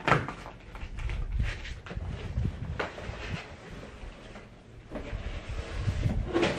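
Large cardboard shipping box being handled and opened: irregular cardboard scraping and rustling with knocks and dull thumps, a sharp knock right at the start.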